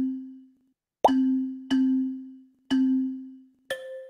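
Quizizz game-start countdown sound effect: a chime-like tone struck about once a second, each one ringing and fading, with a higher-pitched tone near the end as the countdown reaches GO.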